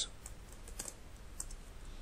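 A few faint, irregularly spaced keystrokes on a computer keyboard as a line of code is typed.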